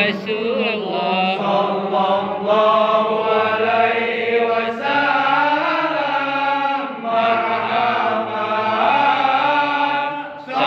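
Men chanting Islamic devotional verses of a marhaban recitation together, a slow melodic chant of long held notes led by one voice on a microphone.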